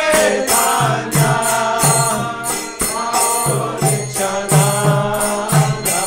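Devotional chanting in kirtan style: voices sing a mantra in long melodic phrases over small hand cymbals struck in a steady beat.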